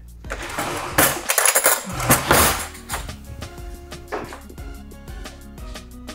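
Wooden spatula tossing and fluffing freshly cooked white rice in a stainless steel pot, with scraping and knocks against the pot for about the first three seconds, over steady background music.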